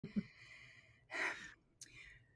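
A woman's short, quiet audible breath, a sigh or intake, about a second in, with a faint click near the end.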